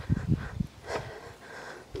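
Irregular low thumps and rustle from walking with a handheld camera: footsteps on a paved path and handling of the microphone.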